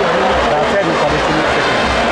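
Loud stadium crowd noise: many voices shouting and chanting over a steady low drum beat, about one and a half beats a second.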